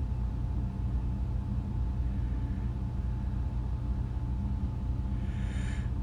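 A steady low hum with faint steady tones running through it. A faint, brief rise of higher sound comes near the end.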